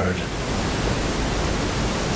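Steady, even hiss of background noise with no other sound, at a fairly high level.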